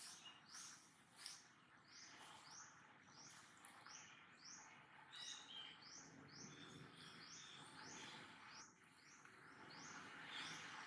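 Faint, rapid series of short rising chirps, about two or three a second, from a bird calling. A few lower, steadier notes from a second call join about five seconds in.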